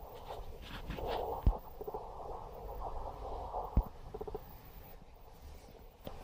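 Handling noise as a bin is tilted and lowered by hand: a low rustling rumble with two light knocks, about one and a half and four seconds in.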